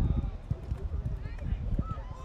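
Players' voices calling out across a soccer pitch, faint and distant, over a constant uneven low rumble on the microphone, with a few short knocks.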